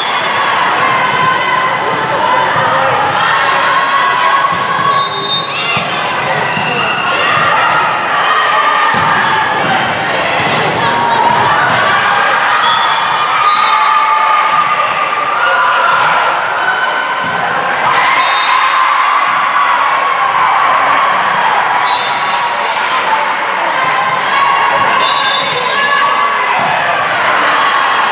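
Volleyball being played in a large indoor sports hall: the ball being served, passed and hit, with players calling out and cheering and a steady din of many voices around the hall.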